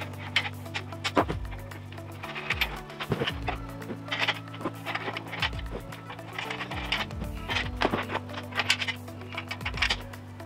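Background music with held low chords that change a few times, with scattered light clicks and knocks over it.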